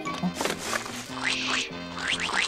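Cartoon advert jingle music with comic cartoon sound effects over it.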